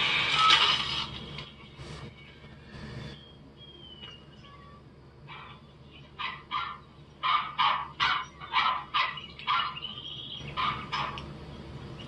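Film soundtrack: a loud crunch in the first second and a half as a car tyre runs over a metal toy truck. Later it gives way to a run of short, sharp sounds about two a second.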